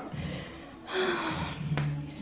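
A person's audible breath out, a short noisy exhale about a second in, followed by a brief click.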